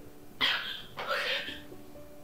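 A woman sobbing, two breathy sobs close together about half a second and a second in, over soft plucked-guitar background music.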